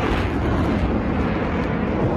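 Rocket motors of several ground-launched missiles firing: a steady, loud noise with a heavy low rumble and no breaks.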